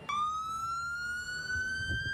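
Siren of an emergency pickup truck sounding one long wail that climbs slowly in pitch.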